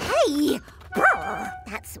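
Two short, wordless vocal sounds from a cartoon character, one near the start and one about a second in, each rising and then falling in pitch like a puzzled "hmm?", over a held note of children's background music.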